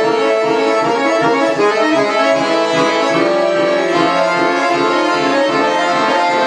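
Solo chromatic button accordion (a Jupiter bayan) playing contemporary classical music: dense sustained chords over a quick, pulsing figure in the low notes.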